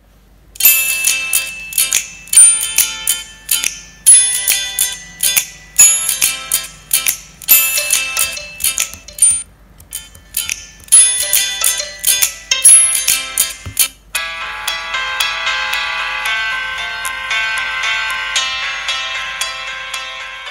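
Instrumental music played over Bluetooth A2DP through a homemade ESP32 stereo speaker driving two small salvaged iPad 1 speakers in 3D-printed enclosures. It starts with short phrases of sharply plucked notes, then about two-thirds in changes to sustained held chords, with little bass.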